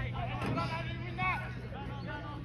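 Distant shouts and calls of footballers and people on the sideline during play, over a steady low hum.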